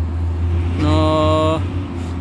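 Low, steady engine rumble from heavy road vehicles.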